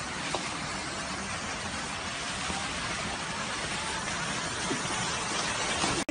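Steady hiss of noise without speech, even in level throughout.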